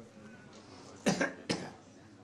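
Two short, sharp vocal bursts from a person, the first about a second in and the second half a second later.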